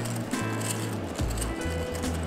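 Background music with low bass notes changing every half second or so and a few held higher tones.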